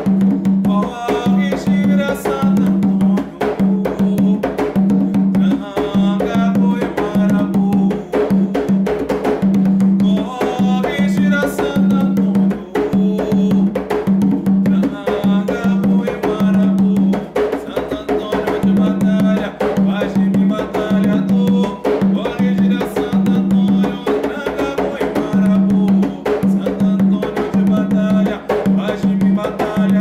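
Umbanda ponto: hand drums beating a steady driving rhythm under sung vocals.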